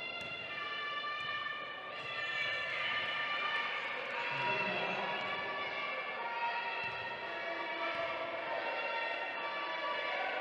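Many overlapping high squeals, held for about a second each and shifting in pitch, from wheelchair tyres turning and braking on a sports hall floor during wheelchair basketball play.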